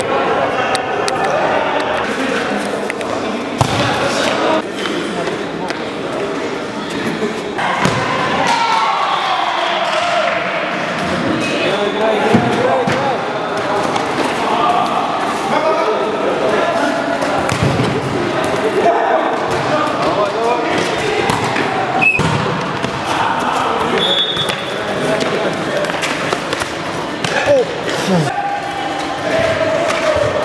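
Indoor football kicked and bouncing on a sports-hall floor, giving thuds at irregular intervals amid voices calling out.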